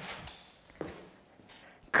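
A man's short drawn-out exclamation, 'eh', trailing off, then faint handling sounds with a soft tap a little under a second in, as a seat cushion is lifted from the car seat.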